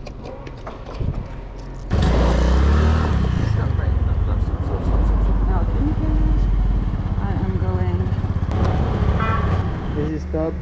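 Small motor scooter's engine running as the scooter is ridden off, with wind buffeting the camera microphone. The loud rumble starts abruptly about two seconds in, after a quieter stretch with a few clicks.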